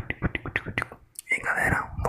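A rapid run of close-mic ASMR mouth clicks, about seven a second, that gives way about a second in to close whispering.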